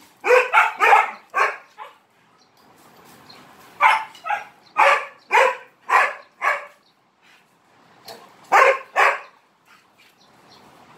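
An aspin (Philippine mixed-breed dog) barking in three bouts: a quick run of about five barks, six more starting about four seconds in, and a pair near the end. This is repeated play-barking for attention.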